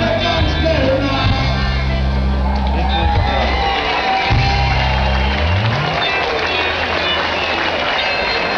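Live rock band playing, with a held bass line and vocals; about five and a half seconds in the bass slides upward and the song ends, giving way to crowd noise with shouts.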